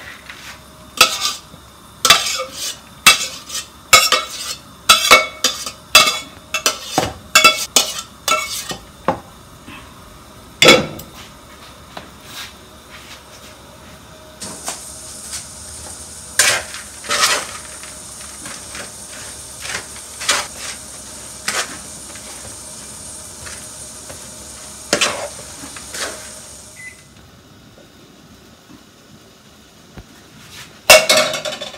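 A spoon stirring and knocking against a large plastic mixing bowl while a vegetable dressing is mixed by hand, with sharp clinks about once a second at first and then more scattered. A steady high hiss joins about halfway through and stops near the end.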